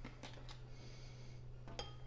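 Faint taps and clinks of a plastic scoop as pre-workout powder is scooped from a tub and tipped into a glass of water, with a soft hiss in the middle, over a low steady hum.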